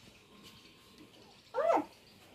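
A single short animal call that slides up and then down in pitch, about one and a half seconds in, over an otherwise quiet room.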